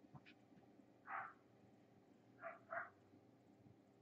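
Near silence broken by three faint, short animal sounds, possibly a dog off-camera: one about a second in, then two in quick succession about two and a half seconds in.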